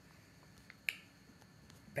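Quiet room tone broken by a single sharp click a little under a second in, just after a fainter tick.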